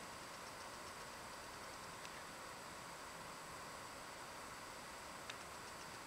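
Faint steady hiss of background room tone, with two faint ticks, one about two seconds in and one near the end.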